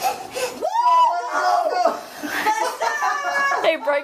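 Excited voices: high-pitched children's squeals and shouts mixed with laughter.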